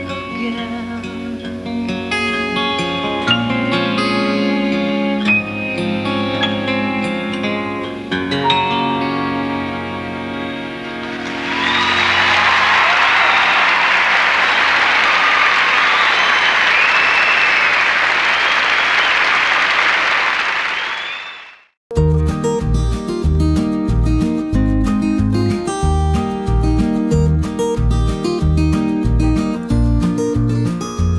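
Closing instrumental bars of a live country song, with acoustic guitar, run for about the first ten seconds. They give way to an audience applauding for about ten seconds, which fades out. After a brief silence a different strummed-guitar country track starts.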